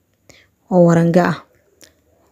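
A short spoken phrase in a voice, lasting under a second, followed by a faint tick.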